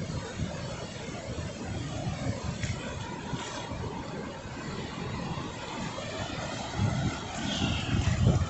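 Small sea waves washing in on a flat sandy beach: a steady noisy rush of surf, with wind rumbling unevenly on the microphone.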